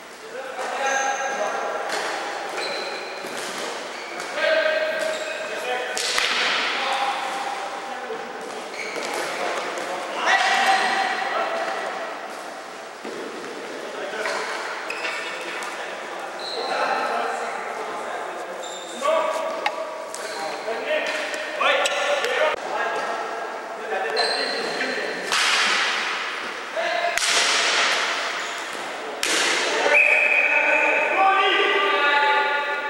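Ball hockey in a gym hall: repeated sharp clacks of plastic sticks and a plastic ball hitting the floor and a goalie's pads, echoing in the hall, with players' voices over them.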